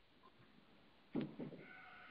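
Near silence in a pause of a man's speech. About a second in comes a short pitched voiced sound, like a drawn syllable, followed by a faint held tone.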